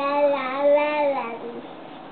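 A baby singing one long held vowel with no words. The pitch wavers slightly, then drops and stops a little past halfway.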